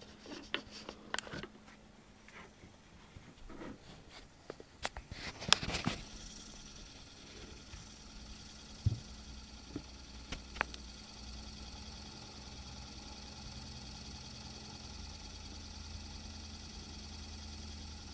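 Eberspacher D2 diesel heater running just after it has fired up, following a workaround for its no-start fault. Its blower fan gives a steady, fairly quiet whir with a faint high whine, clear from about six seconds in after a few light knocks and clicks.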